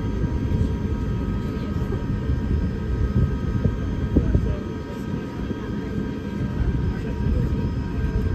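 Airbus A350-1000 cabin noise heard from a passenger seat: a steady low rumble with several steady whining tones from the engines and air systems. A few louder knocks come a little past halfway.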